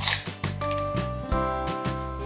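Background music: held synth-like notes joined by a chord partway through, over a steady beat.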